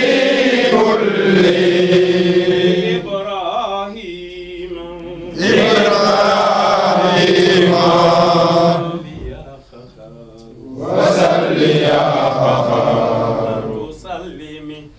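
A group of men chanting a devotional chant together in unison. It comes in three long, sustained phrases, each followed by a softer gap.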